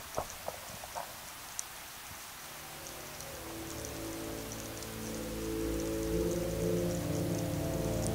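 Underwater recording ambience: a steady hiss with scattered sharp clicks and crackles. From about three seconds in, ambient music with long held notes fades in and grows louder, taking over the sound.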